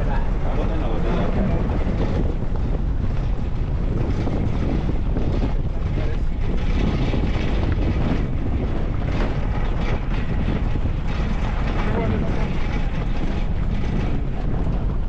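Steady engine and tyre noise from a vehicle driving slowly on a dirt road, with wind buffeting the microphone.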